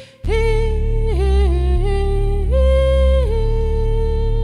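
A woman's voice sings long held notes over a looped microKORG synth bass. The notes step down in pitch and back up, and there is a brief gap just at the start.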